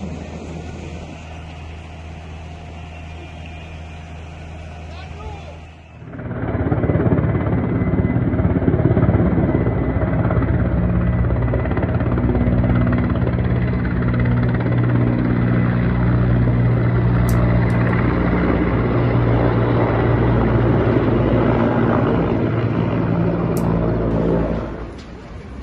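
Helicopter running overhead, a loud steady drone from its rotor and engine that starts suddenly about six seconds in. Before it, a quieter steady background noise.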